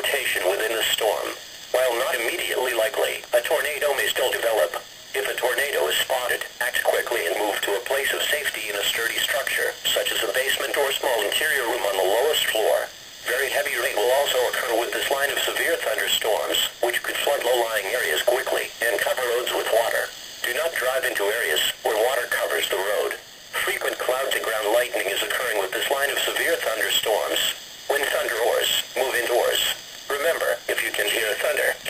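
A voice reading a broadcast over a weather radio's small speaker. It sounds thin, with a light hiss, and runs on with short pauses.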